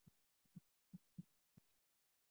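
Chalk tapping and knocking on a blackboard while writing, about five faint, short knocks in two seconds, otherwise near silence.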